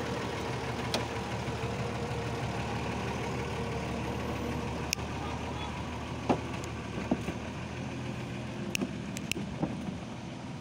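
Shaktimaan truck's engine running steadily as the truck crawls along a rutted dirt road, with a few short, sharp clicks and knocks scattered through it.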